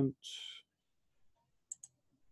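A short breathy hiss just after the start, then two quick computer-mouse clicks close together near the end.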